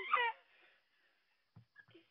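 A young child's brief high, wavering whining cry that cuts off about a third of a second in, followed by quiet with a few faint clicks near the end.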